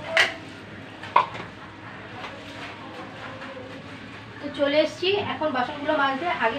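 Two sharp metallic clinks about a second apart near the start, the second with a brief ringing tone, like kitchenware knocking together; a woman starts talking near the end.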